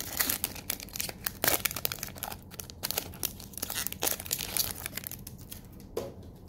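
Foil wrapper of a Magic: The Gathering booster pack crinkling and crackling as it is torn open by hand, with many small sharp crackles that thin out near the end.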